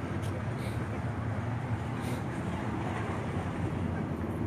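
Steady low rumbling outdoor street noise, with faint indistinct voices in it.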